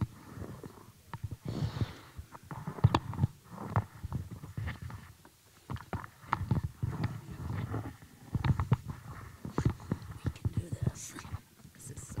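Handling noise from a handheld microphone being passed hand to hand along a table: a string of knocks, bumps and rubbing.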